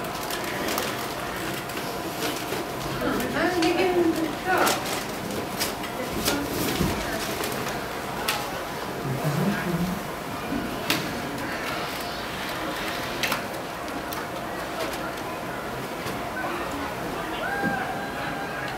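Indistinct talking in a meeting room, with scattered short clicks and taps.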